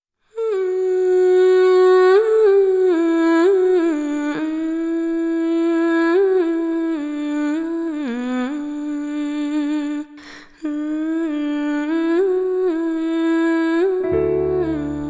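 A woman's voice humming a wordless, gliding melody alone, with no accompaniment, breaking off briefly for a breath about ten seconds in.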